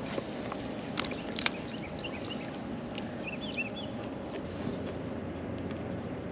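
Steady outdoor background noise over open water, with a few short, faint bird chirps in the middle and a couple of sharp clicks about a second in.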